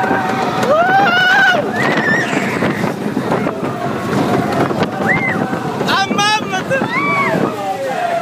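Roller coaster riders screaming and yelling in several long cries that rise and fall in pitch. Under them is the noise of the moving mine-train coaster and wind on the microphone.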